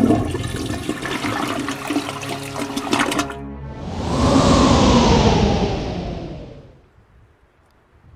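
A loud, rough, crackling noise for the first three seconds. Then a toilet flushing: rushing water swells, swirls down and drains away by about seven seconds in.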